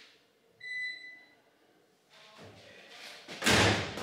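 A single electronic beep from the stacked washer-dryer's control panel about half a second in, then some rustling and a loud thump near the end.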